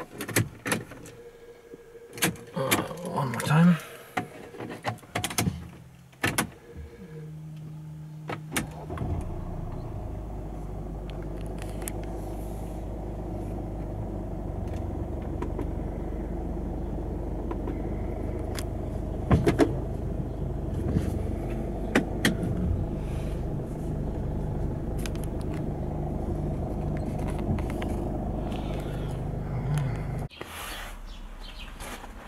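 Clicks and rattles, then about eight seconds in the Mercedes C220d's four-cylinder diesel comes in and idles steadily, with a few sharp clicks over it later on.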